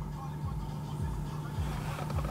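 Car engine idling, a low steady hum heard from inside the cabin.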